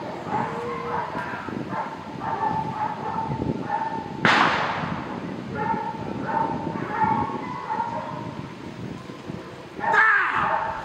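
Dog barking repeatedly in short, evenly spaced barks. A single sharp crack rings out about four seconds in.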